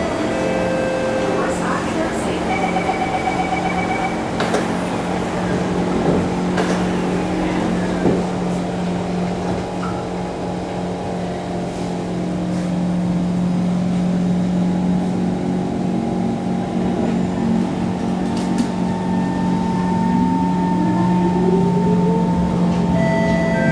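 SMRT C151 train car with the steady hum of its onboard equipment. A short run of rapid door-closing warning beeps comes a few seconds in. Near the end a rising whine sets in as the traction motors start the train moving.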